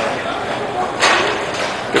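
Roller hockey game noise echoing in a large indoor rink: a steady din of play with faint shouts from players, and one sharp clack about a second in.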